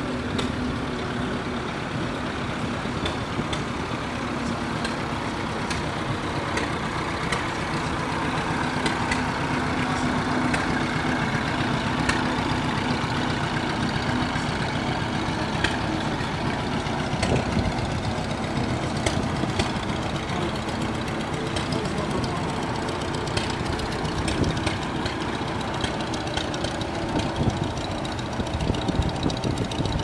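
Vintage tractor engines running as old tractors pass close by one after another, with a continuous mix of engine sound and frequent sharp exhaust ticks and pops.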